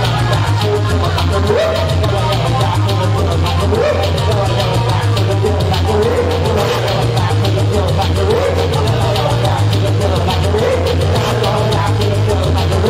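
A band playing live electronic rock on keyboards: a loud, steady synth bass line under a regular beat, with a short rising synth figure repeating every second or two.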